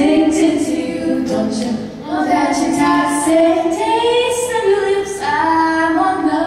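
Two female voices singing held, gliding notes together through microphones, with an acoustic guitar accompanying underneath.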